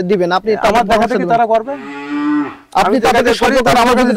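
A man talking, broken about halfway through by a cow mooing once: a single held call of about a second that drops in pitch at its end.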